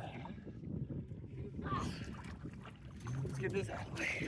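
Soft water splashing and lapping from a swimmer stroking through lake water beside a boat's hull, with faint voices.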